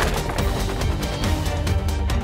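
Driving soundtrack music with a heavy low end and a steady beat.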